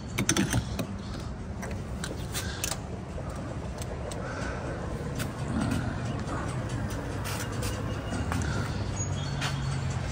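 Car being filled at a gas pump: a few sharp clicks about half a second in as the fuel nozzle is handled, then a steady low hum with a rushing noise while fuel is pumped.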